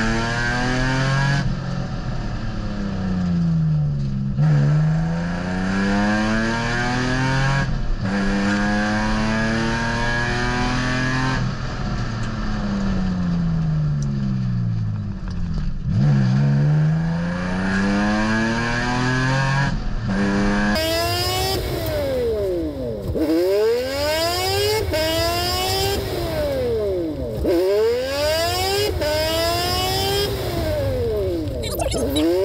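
Nissan 350Z's 3.5-litre V6 through a loud exhaust, repeatedly building revs and dropping back as the car speeds up and slows down in a run of stops to bed in new brake pads and rotors. About twenty seconds in, the sound changes abruptly, and the revs then fall and climb more quickly.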